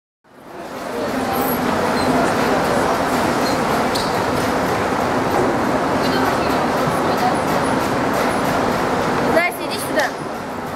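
Many people talking at once, a steady echoing hubbub in an indoor swimming pool hall, fading in over the first second. The hubbub breaks off briefly near the end, where a short sound with a bending pitch is heard.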